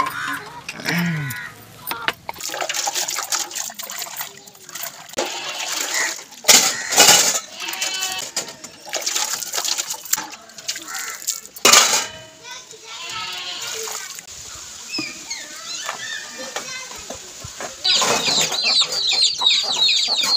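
Steel utensils clinking and scraping against each other as they are scrubbed by hand, with water poured and splashing as they are rinsed; the loudest splashes come about 7 and 12 seconds in. Near the end, chickens cluck.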